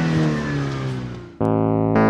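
A car engine's rev dies away, its pitch falling and fading. About one and a half seconds in, a bright electric piano chord cuts in suddenly to start a keyboard intro jingle.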